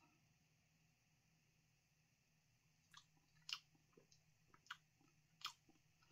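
Faint mouth sounds of someone tasting: after near silence, about half a dozen soft lip smacks and tongue clicks start about halfway through.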